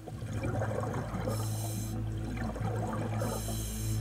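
Scuba diver breathing underwater through an open-circuit regulator: a gurgle of exhaled bubbles, then a hissing inhalation through the demand valve, twice.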